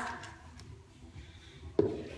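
A quiet room, with one short sharp knock near the end.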